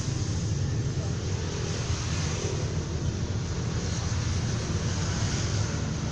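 Steady, unbroken rumble and hiss, heaviest in the low end, with no clear pitch or rhythm.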